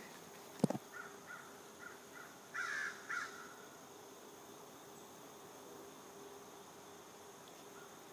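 Faint outdoor insect chorus: a steady high-pitched cricket-like trill. Two short harsh bird calls come between two and a half and three seconds in, and a single sharp click a little over half a second in.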